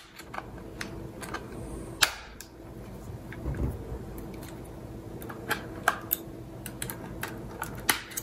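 Irregular plastic clicks and small snaps as a third-generation iPod's case is pried apart with plastic opening tools, the sharpest click about two seconds in, over a faint steady hum.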